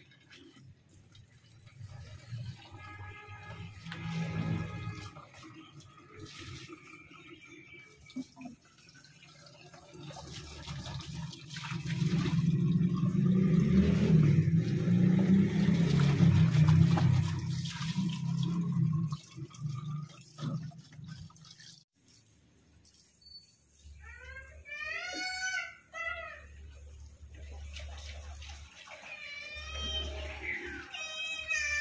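Water running from a wall tap onto and into plastic bottles as they are rinsed, loudest for several seconds in the middle while a bottle fills under the tap. Near the end, a quieter warbling pitched call.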